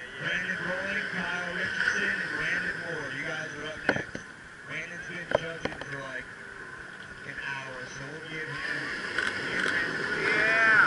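Indistinct voices and chatter with no clear words, broken by a few sharp clicks about four and five and a half seconds in from a DSLR camera's shutter.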